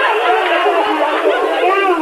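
Several voices talking and crying out over one another, with no pause, on a thin-sounding old recording with no low end.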